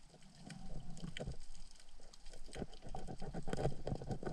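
Underwater handling noise as gloved hands and a knife clean freshly speared red mullet: a steady scatter of small clicks and crackles with low knocks and rubbing, busier in the second half.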